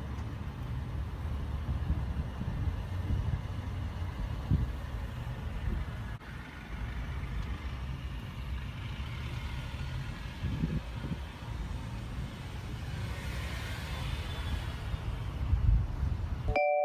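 Jeep engines running nearby, a low uneven rumble that grows louder near the end as a Jeep drives close past.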